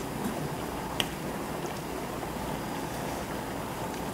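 Spicy fish stew (maeuntang) simmering in a stainless steel pot while a ladle stirs through it: a steady bubbling hiss, with one sharp click about a second in.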